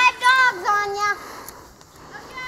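A young child's high-pitched voice calling out in three drawn-out, pitch-gliding syllables in the first second or so, then quieter.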